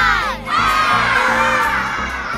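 A voice calls out the last number of a countdown, then from about half a second in a group of children shouts and cheers over upbeat children's music with a steady beat.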